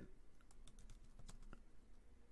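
Faint, irregular clicks of computer keyboard keys being typed.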